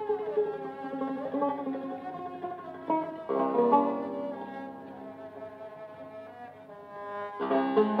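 Solo Turkish tanbur, a long-necked fretted lute, playing slow melodic lines: a sliding note just after the start, then a strongly struck note about three seconds in and another near the end, each left to ring.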